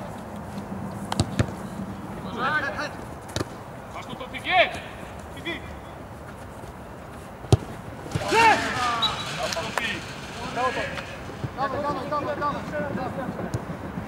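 Football kicked on an artificial-turf pitch: a few sharp, single thuds of the ball, the hardest about halfway through, with players' shouts and calls around them.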